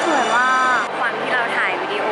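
Speech: a woman's voice talking, with an abrupt cut about a second in from one voice sound to another.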